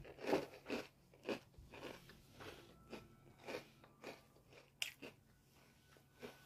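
Someone chewing crunchy Nestlé Cookie Crisp cereal: a run of irregular crunches, loudest in the first second or so and fainter after.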